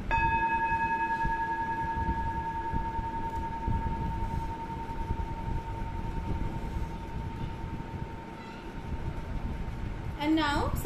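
A singing bowl struck once, its tone ringing on and slowly fading away over about seven seconds, marking the close of a guided meditation.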